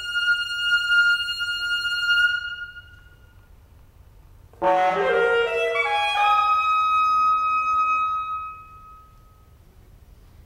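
Solo alto saxophone holding a long high note that dies away in the hall's reverberation. After about two seconds of pause, it comes in suddenly and loudly with a run of lower notes, then holds another long high note that fades out near the end.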